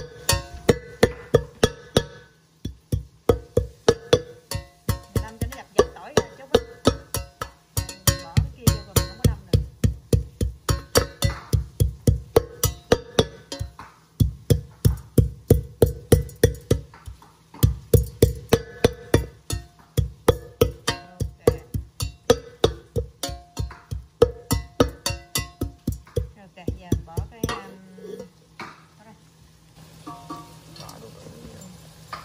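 A pestle pounding garlic and chilies in a stainless steel pot used in place of a mortar. Quick, steady strikes, about three a second, each ringing briefly off the metal pot, with a few short pauses. The pounding stops near the end.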